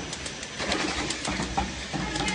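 Plastic cup counting and packing machine running: irregular clicks and clacks from its mechanism over a low steady hum.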